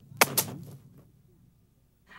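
An apple dropped onto grassy ground, landing with two quick thuds a fraction of a second apart that die away within about a second.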